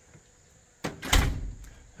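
A short knock about a second in, then a louder, heavier thump with a deep low end that dies away quickly.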